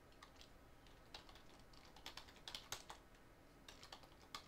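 Faint typing on a computer keyboard: a series of soft, irregular keystroke clicks as a short word is typed.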